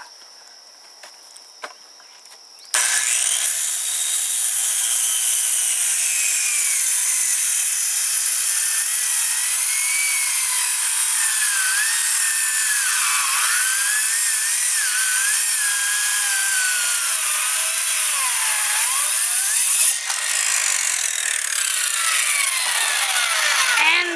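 An electric power saw starts about three seconds in and rips a pallet board lengthwise into a strip. Its whine wavers in pitch as the blade works through the rough wood, with a short break in the cut near the end.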